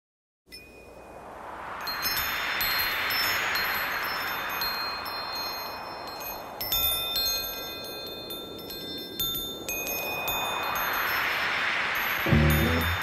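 Wind chimes ringing in many overlapping high tones, densest in the middle, over a whooshing wind-like sound that swells, fades and swells again. It is the atmospheric intro of a recorded song, just before the band comes in.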